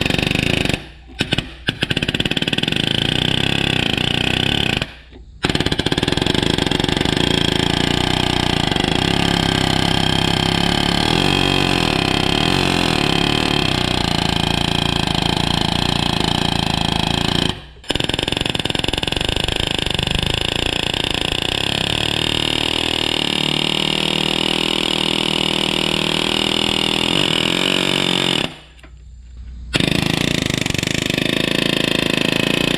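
Pneumatic palm nailer hammering rapidly against a rust-seized tractor PTO shaft. It runs in long steady stretches, stopping briefly about a second in, around five seconds in, near eighteen seconds and just before the end. The rapid blows are meant to vibrate the seized telescoping tubes free.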